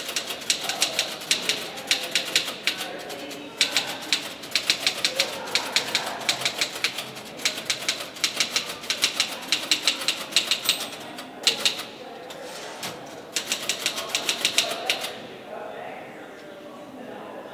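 Fast typing on a keyboard, rapid key clicks in long runs. It pauses briefly about three and a half seconds in and again for over a second near twelve seconds, and stops about a second before the end.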